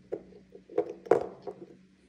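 A few light clicks and knocks of small plastic molecular-model balls, a glue bottle and magnets being handled over a whiteboard; the sharpest tap comes about a second in.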